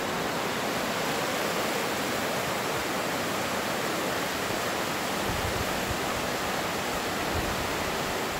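Mountain creek rushing over rocks: a steady, even rush of water.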